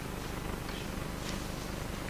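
Steady low hum of the room and amplification in a pause between words, with faint rustling of paper being handled.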